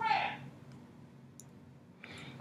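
A woman's laugh trailing off in the first half second, followed by quiet with two faint, sharp clicks less than a second apart.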